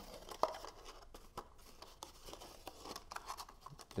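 Cardstock rustling and crinkling in the hands as a paper liner piece is pushed down inside a folded paper box, with a few small sharp clicks of paper against paper.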